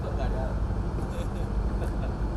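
Steady low rumble of a large hall's room noise, with a few faint, brief voice sounds.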